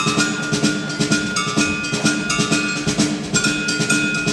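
Live percussion ensemble playing a fast rhythm of rapid drum strokes, with short ringing metallic notes held over it.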